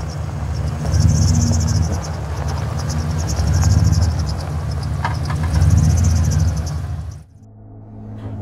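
Pickup truck engine rumbling low, swelling and easing several times, with crickets trilling in pulses over it. Both stop abruptly about seven seconds in.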